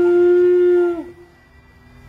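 A horn blown in one long steady note that sags in pitch and cuts off about a second in.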